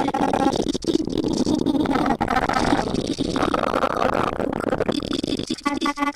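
TipTop Audio Z DSP's Grain De Folie granular card, 'Four Spreaded grains' algorithm, turns a looped recording of a voice counting in Japanese into a dense, smeared wash of overlapping grains, fully wet with stereo spread. The texture shifts in pitch and colour about halfway through.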